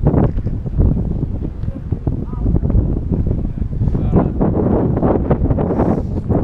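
Wind buffeting the camera microphone in a steady, gusting low rumble, with snatches of people talking in the background.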